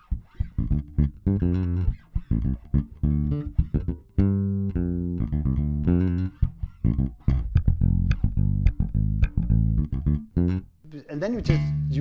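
Electric bass guitar playing a rock-funk bass line of separate plucked notes built from root, fifth, seventh, octave and third, with a brief break about four seconds in. The playing stops shortly before the end.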